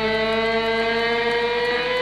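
Electric guitar holding one long sustained note in a hard rock song, its pitch held steady with no drums or vocals over it.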